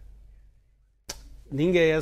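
A short near-silent pause in a man's speech, broken about a second in by a single sharp click, after which the man speaks again.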